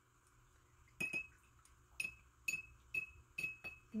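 Paintbrush clinking against a glass water jar as it is swished and rinsed: about six light taps from about a second in, each with a short glassy ring.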